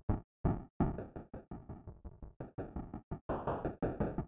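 Live-coded electronic music: a rapid stream of short percussive hits from a synthesized noise instrument (the 'supernoise' synth), several a second and unevenly spaced, each dying away quickly with decays of varying length.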